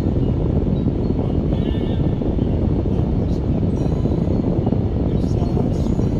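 Steady low rumble of road and engine noise inside a slowly moving car.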